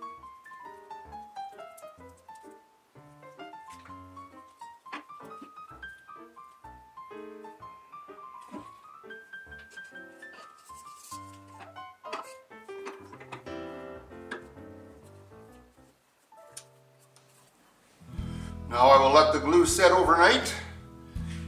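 Background instrumental music, a melody of single notes that opens with a falling run. It fades away about sixteen seconds in, and a man's voice starts near the end.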